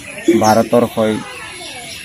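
Speech only: a voice talks briefly, then pauses.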